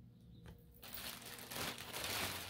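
Plastic shopping bag crinkling and rustling as hands rummage inside it. It starts about a second in and grows louder.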